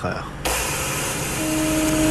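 A high-speed TGV train rushing past with a steady roar. A steady tone joins the roar about halfway through.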